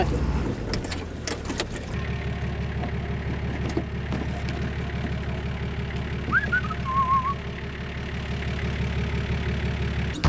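A four-wheel drive's engine idling steadily, with a few knocks and rattles in the first couple of seconds. A brief whistled chirp and trill comes about six to seven seconds in.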